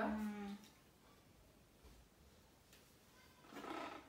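A girl's voice trailing off on a drawn-out final syllable, then near silence in a small room, with talking starting again near the end.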